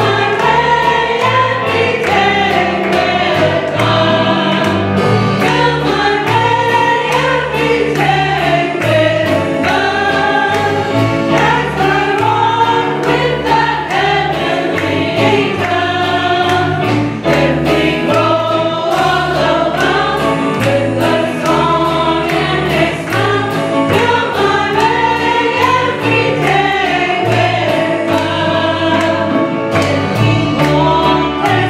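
A small group of women singing a gospel song together through microphones, backed by an amplified band with a moving bass line and a steady drum beat.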